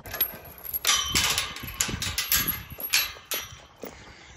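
Steel tube farm gate and its latch being handled, with several metallic clanks and rattles and a high ringing after the knocks.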